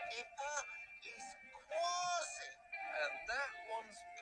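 Cartoon character voices, electronically altered to an unnaturally high, warbling pitch, speaking in short choppy phrases.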